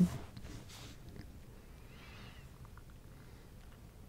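Quiet room with one faint call that rises and then falls in pitch, about two seconds in, followed by a few faint ticks.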